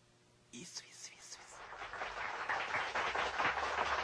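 A man whispering a few words, followed by a noisy wash that builds and grows louder toward the end.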